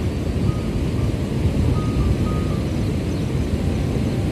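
Wind buffeting an outdoor microphone: an uneven low rumble.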